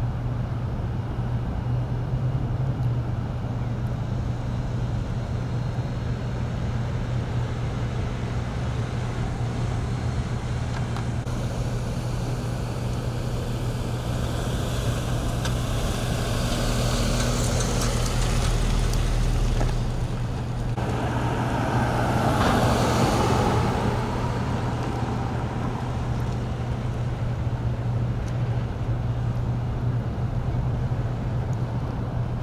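Street traffic ambience: a steady low hum, with two vehicles passing one after the other around the middle.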